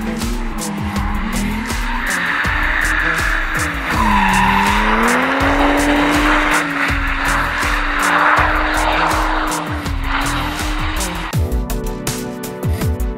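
Nissan S14 drift car sliding with its engine held high in the revs and its tyres squealing. The engine note drops about four seconds in, then climbs back and holds. Music with a steady beat plays underneath and takes over just before the end.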